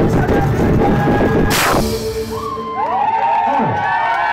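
A live band with violin, double bass and drums playing the final bars of a song, ending on a loud crash about a second and a half in, with a chord ringing briefly after it. The audience then breaks into cheering and whooping.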